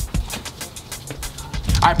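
Background music with a steady, quick beat and a low bass line; a man's voice comes in near the end.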